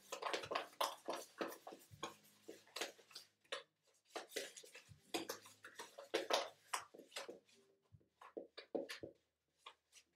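Margarine and sugar being worked together by hand in a plastic mixing bowl, creaming them until smooth: irregular short scraping and tapping sounds, several a second, with a brief pause near the end.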